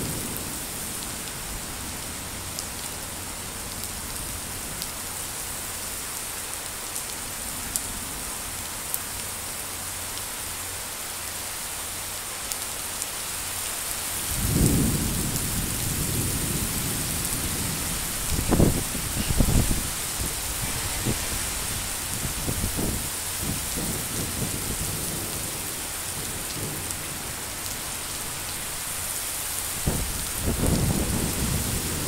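Heavy rain falling steadily on paving and trees, a dense even hiss. About halfway through, a low rumbling comes in, peaking in a few sharp surges a few seconds later.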